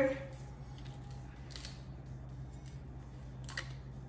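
A few faint, short clicks as the cap of a lime juice bottle is twisted open by hand, over a steady low hum.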